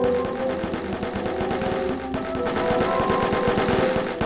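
Rapid automatic gunfire as a sound effect, an unbroken stream of shots, over held musical notes.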